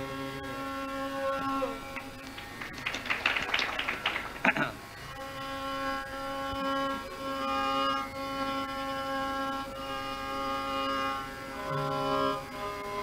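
Carnatic violin playing long held notes with small slides over a steady drone, interrupted from about three to five seconds in by a brief flurry of sharper, noisier sounds.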